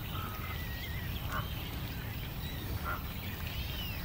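Birds calling: two short soft calls about a second and a half apart, with faint wavering high chirps and whistles, over a steady low rumble.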